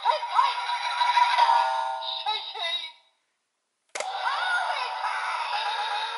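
The DX Tiguardora toy's small built-in speaker plays a thin, tinny recorded jingle of singing voice and music. It cuts off about three seconds in, a sharp click follows after a short silence, and a new voiced music clip starts.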